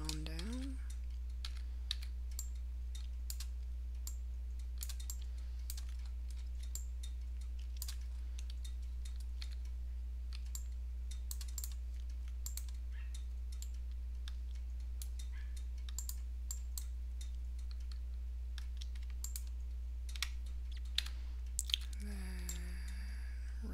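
Irregular clicks of a computer keyboard and mouse, a few a second, over a steady low electrical hum.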